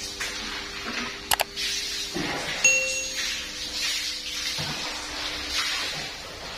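A steady low hum under recurring noisy rushes. A sharp double click comes a little over a second in, and a short bright ding comes near the middle.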